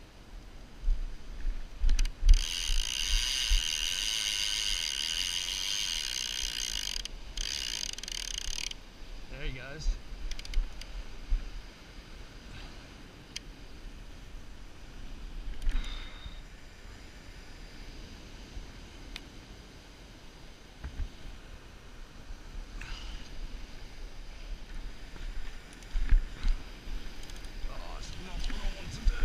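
Penn Senator 12/0 big-game reel with line being pulled off it against the drag, the clicker screaming steadily for about six seconds starting about two seconds in, with a brief break near the end of it: the hooked shark taking line. Wind rumbles on the microphone throughout.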